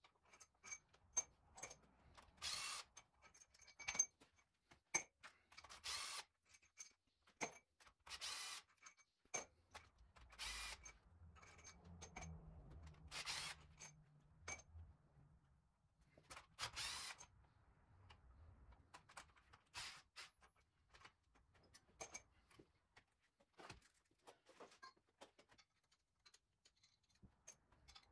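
Scattered metallic clinks of loosened cylinder-head bolts and tools being handled, with a cordless impact driver on a nearly flat battery running for a few seconds about twelve seconds in to spin out a head bolt.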